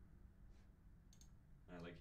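Near silence with a low room hum, broken a little over a second in by a quick computer-mouse click. A man's voice starts near the end.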